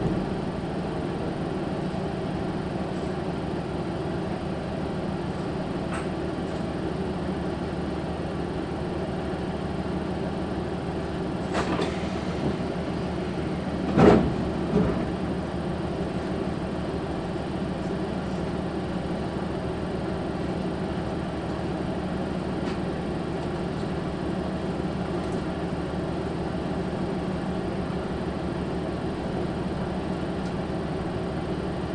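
KiHa 185 diesel railcar idling at a station stop, a steady engine hum heard from inside the car. A single loud thud comes about halfway through, followed by a softer one.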